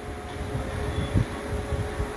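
Steady background room noise during a pause in speech: a constant low hum with a single steady tone through it and an uneven low rumble underneath.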